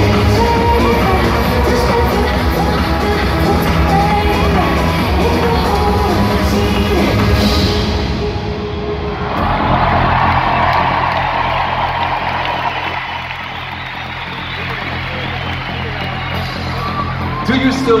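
Live electronic dance music with a female singer over a heavy beat, heard from the audience in a large arena. About nine seconds in the high end and beat drop away, leaving a sustained low synth note under crowd cheering.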